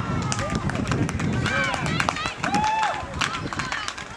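Several people calling and shouting, with frequent short clicks and knocks among the voices.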